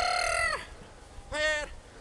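Excited agility dog giving two high-pitched yelping cries as it runs and jumps the hurdles: a steady half-second cry at the start, then a shorter wavering one about a second and a half in.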